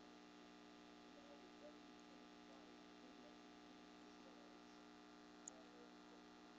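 Near silence: a faint, steady electrical hum, with one tiny click near the end.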